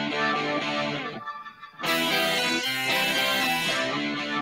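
Isolated distorted electric guitar rhythm track from a multitrack rock recording: held chords for about a second, a short break, then a brighter, louder chord ringing on.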